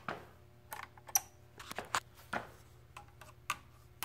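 Light, irregular clicks and taps, about a dozen, from a pen-style voltage tester and fingers working against the wiring in an oil boiler's control box, over a faint steady low hum.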